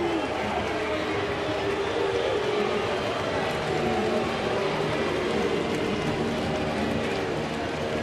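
Steady murmur of a baseball stadium crowd, an even hum of many voices with no single voice standing out.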